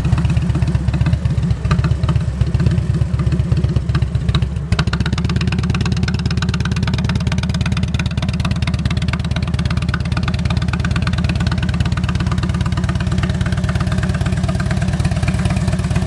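2008 Harley-Davidson Ultra Classic's 96-cubic-inch V-twin idling steadily with its uneven, pulsing exhaust beat, running well after starting right up. A brief dip about five seconds in.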